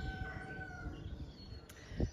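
A rooster crowing faintly, one held note that fades out about a second in, over a low rumble.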